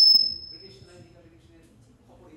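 A high, steady whistling tone, loudest at the start and fading out about a second in, over faint voices.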